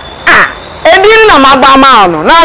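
Speech only: a woman talking in an animated voice.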